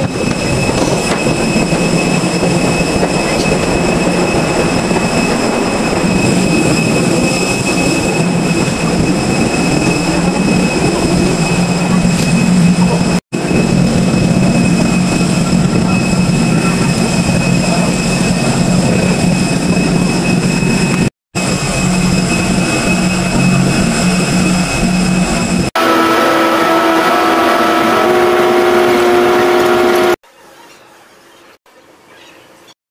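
Loud, steady engine and machinery noise on an airport apron and inside an apron shuttle bus: a constant high whine over a low hum. It changes near the end to a different set of steady tones.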